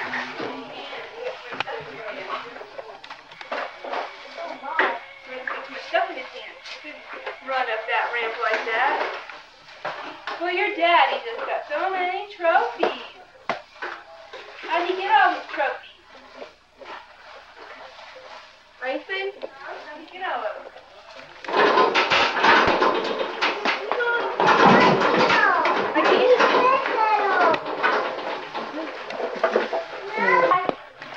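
Indistinct talking by people's voices, with no clear words. The voices grow louder and busier, with extra noise, about two-thirds of the way in.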